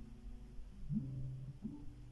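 Quiet passage of a live acoustic song: a guitar chord fading away, then a low voice softly humming a few notes from about a second in.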